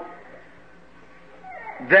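Steady hiss and room tone of an old tape recording of a church service. A man's voice starts speaking again near the end.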